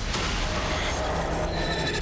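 Horror-trailer sound effects: a dense noisy rush, with a high, shrill, steady-pitched tone rising out of it in the second half.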